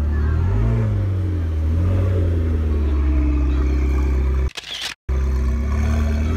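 McLaren twin-turbo V8 running at low revs as the car pulls slowly away, with short blips of the throttle about a second in and again around two seconds.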